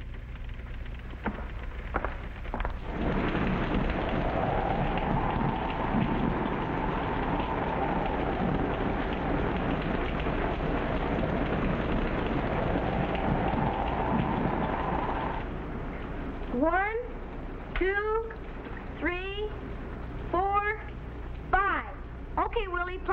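Heavy rain pouring down, with a wavering howl rising and falling over it, stopping about fifteen seconds in. Then five short, steeply rising cries about a second apart.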